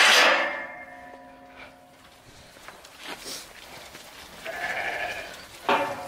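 Spring-loaded latch of a galvanised steel livestock gate drawn back with a metal clank that rings on for about a second. Near the end a Valais Blacknose sheep bleats once.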